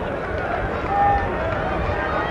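Indistinct distant shouting voices over a steady outdoor background noise, with one short, louder shout about a second in.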